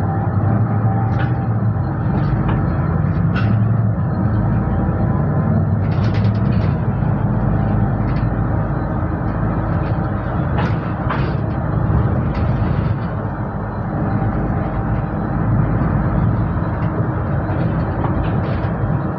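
Inside a third-generation Solaris Urbino 12 city bus on the move: steady engine and road rumble, with a few brief rattles.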